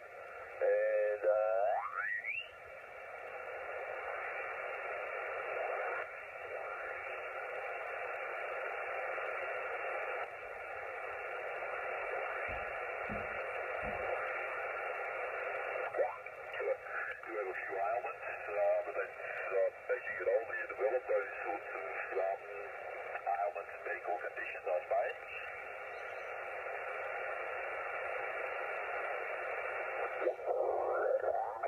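Yaesu FT-897 transceiver's receiver audio while its dial is tuned across the 40-metre amateur band in lower sideband: steady band hiss, with sideband voice signals sliding in pitch as the dial passes them. One slides upward about two seconds in, and snatches of garbled, off-tune sideband speech come through in the second half.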